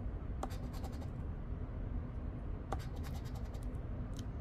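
Edge of a poker chip scraping the coating off a scratch-off lottery ticket in short bursts of quick strokes, about half a second in and again near three seconds.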